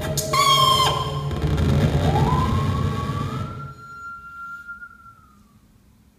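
Improvised ensemble music in which a bowed musical saw's pure tone glides slowly upward and holds, over a low rumble from the rest of the group. The other instruments stop a little before four seconds in, and the saw's tone lingers alone, then fades out.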